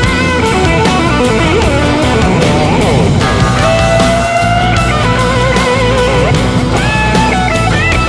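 Blues-rock band music: an electric guitar lead plays held notes with a wide vibrato and sliding bends over bass and a steady drum beat.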